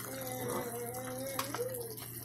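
A voice humming one held note for about a second and a half, then briefly again, over faint kitchen noise with a steady low hum. A single light click comes about a second and a half in.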